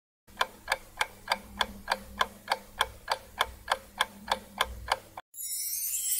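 Countdown-timer ticking sound effect: even clock ticks, about three a second for some five seconds. A steady hiss takes over near the end.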